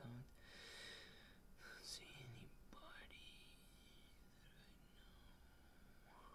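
Near silence, with a faint whispered voice murmuring in the first half.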